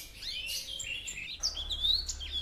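Small songbirds chirping: a quick, busy run of short high calls, many of them sliding down or up in pitch.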